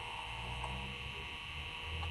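Steady electrical hum and whine of a running vintage PC and its spinning Seagate ST-4038 MFM hard drive, with a faint tick a little past half a second in.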